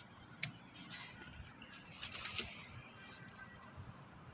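Faint rustling and scratching of a nylon cast net being handled, with a sharp click about half a second in.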